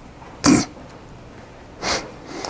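Two short, sharp bursts of breath from a person, about a second and a half apart, in the manner of coughs or sneezes.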